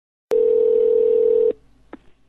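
A telephone call-progress tone heard over the phone line: one steady ring about a second long that cuts off suddenly, followed by a faint click as the call connects.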